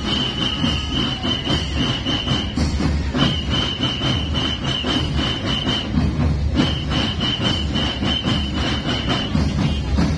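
Marching band drum corps of snare and bass drums playing a steady marching beat. Over it a shrill high tone pulses in quick time, in three runs of about two and a half seconds with short breaks between.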